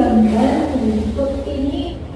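A woman's voice, with a steady low hum underneath.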